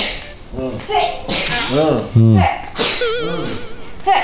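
Several quick swishing whooshes, with a voice-like sound that slides up and down about two seconds in and a warbling tone near the end.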